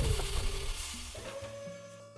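Electronic sci-fi transition stinger: a sudden deep boom at the start, then a hissing wash that fades away over about a second, over held synth tones.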